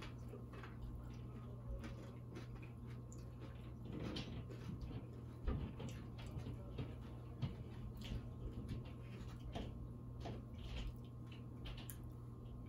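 People chewing mouthfuls of loaded tortilla-chip nachos: faint, irregular crunches and wet mouth clicks scattered throughout, over a steady low hum.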